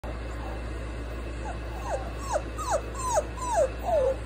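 Puppy whining: a run of about seven short whines, each sliding down in pitch, about two or three a second, starting about one and a half seconds in.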